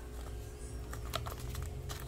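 A small cardboard medicine box handled and turned over in the fingers, giving a few light clicks and taps in the second half.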